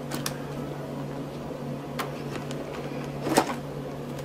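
Clear plastic zipper envelopes in a ring binder being flipped and handled: a few short crinkles and clicks, the loudest a little over three seconds in, over a steady low hum.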